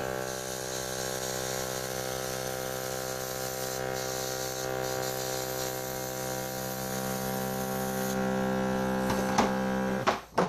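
Small electric airbrush compressor from a PME cake-decorating kit running with a steady hum, with air hissing from the airbrush pen as it sprays food colour through a stencil.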